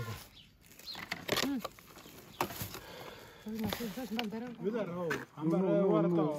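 People talking, with a few sharp clicks in the first half.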